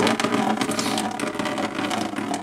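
Household water system running as water starts flowing through a freshly installed activated-carbon filter cartridge to flush it: a steady rushing noise.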